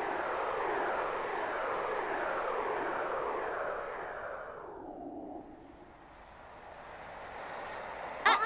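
Whooshing sound effect of the spinning Teletubbies windmill, a steady rushing swept again and again by falling stripes of pitch; it fades away about five to six seconds in, then swells a little again.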